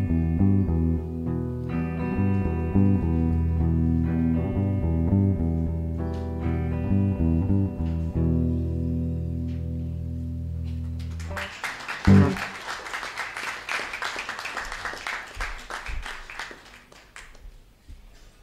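Guitar playing the closing phrase of a song and ending on a held chord that rings for a few seconds. Then a single loud knock and applause that fades away.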